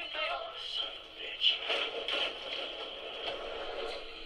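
Faint, thin speech from a video playing back over a small speaker, with no bass to it.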